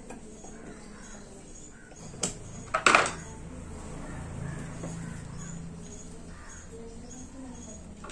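Small metallic clicks and scrapes as a screwdriver works at the steel end cover and bearing housing of a wall fan motor, with a louder, harsh sound about three seconds in and a faint low hum after it.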